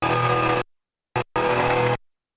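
Live punk rock band music cutting in and out abruptly: about half a second of loud band sound, a gap of dead silence, a brief blip, then another half second before it cuts off sharply at the end. The chopped sound is the dropout of a damaged VHS recording.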